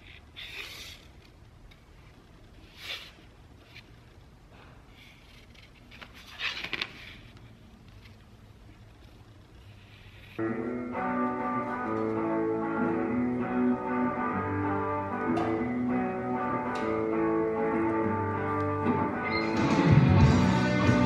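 A few short scratches of a marker pen being drawn on ram board against a steel ruler, then guitar background music comes in abruptly about halfway through and is the loudest sound.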